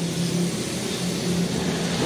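A motor vehicle's engine running close by, a steady hum over a wash of noise.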